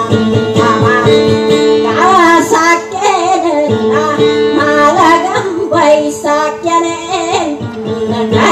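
A woman singing a Maranao dayunday song with acoustic guitar accompaniment. Steady plucked guitar notes run under a sung melody that bends and wavers in pitch, the voice coming in strongest about two seconds in.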